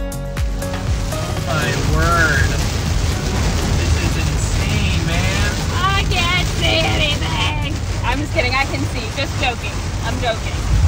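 Steady low rumble of a car driving through heavy rain at night, with a voice rising and falling in pitch over it from about a second and a half in.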